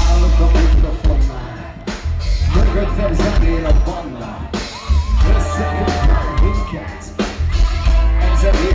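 Rock band playing live through a concert PA: drums, bass and electric guitars with a heavy low end, heard from within the audience.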